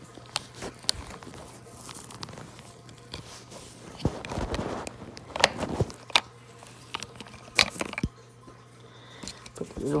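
Scattered clicks, knocks and rustling as hands handle a plastic battery-powered toy and work at its battery compartment.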